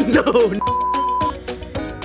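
Background music with a single steady electronic tone, a beep-like sound effect lasting under a second, about half a second in.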